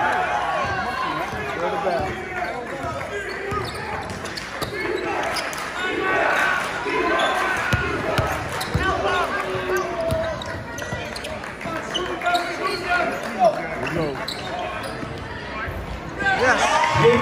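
Basketball dribbled and bouncing on a hardwood gym floor during play, over voices of players and spectators.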